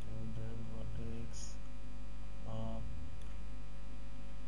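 Steady electrical mains hum on the recording, with two brief, faint voiced sounds, near the start and just past halfway, and a short hiss about a second and a half in.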